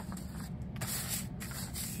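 Sheets of printer paper rustling and sliding as they are handled, in a couple of brief rustles, the longer one about a second in. A steady low hum runs underneath.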